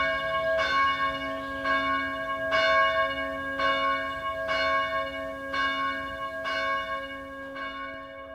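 A single church bell tolling, struck about once a second, its low hum ringing on between strokes and fading a little near the end.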